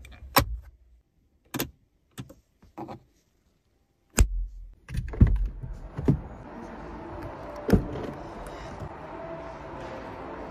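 Clicks and knocks of a car's interior plastic trim being handled: the rear armrest console's storage lid and cup holder snapping and latching, with two heavier knocks around four and five seconds in. A steady background noise sets in from about five seconds.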